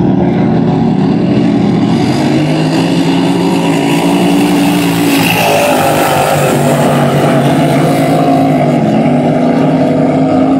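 Racing hydroplane engines running hard at speed across the water, a loud steady engine note from several boats. About halfway through one boat passes close and the sound swells, then its pitch drops as it goes by.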